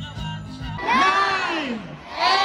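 A large outdoor crowd shouting together in one long, loud call starting about a second in, after a moment of guitar music.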